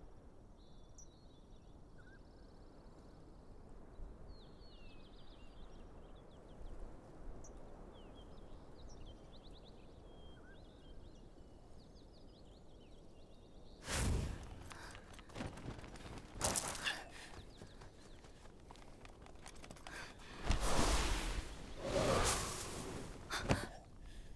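Faint birds chirping over quiet open-air background noise. About fourteen seconds in, a run of sudden whooshes and thuds begins, the loudest a couple of seconds before the end.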